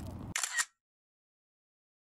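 A brief laugh and a short high click about half a second in, then dead silence for the rest.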